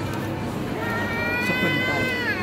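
A toddler's high-pitched cry: one long, held wail starting about a second in.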